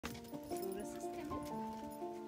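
Background music: a melody of held notes changing pitch every fraction of a second, over a light beat about twice a second.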